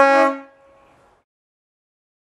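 Leslie RS3L three-chime locomotive air horn sounding a loud, steady chord that cuts off about half a second in.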